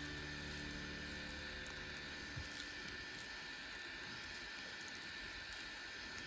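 Faint steady hiss with a few light, faint ticks. The tail of background music fades out in the first couple of seconds.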